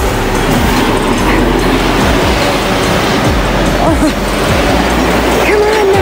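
Air dancer blower fan switched on, running with a loud, steady rush of air and a low hum that starts just after the beginning, as the elf tube man fills and flaps.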